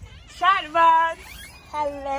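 High-pitched human voices giving drawn-out, excited wordless calls: two held calls in the middle, a third starting near the end.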